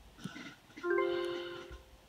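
Short electronic chime from a laptop's online auction page: a bell-like tone struck about a second in and fading away within a second. It marks a new bid coming in.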